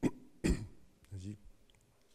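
A man coughs twice into a handheld microphone, the two coughs about half a second apart, followed by a short voiced sound just after a second in.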